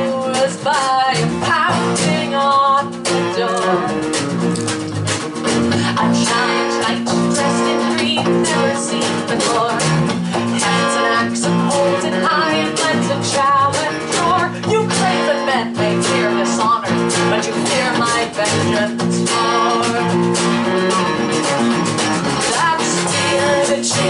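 Live folk-rock band playing: strummed acoustic guitar, electric bass and a drum kit keeping a steady beat, with a woman's voice singing at times over the instruments.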